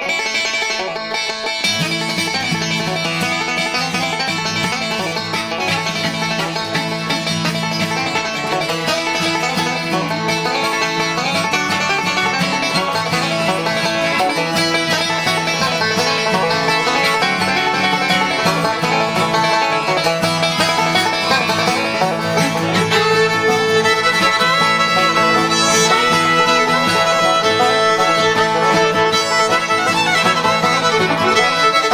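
Resonator banjo picked in bluegrass style, a steady stream of quick plucked notes.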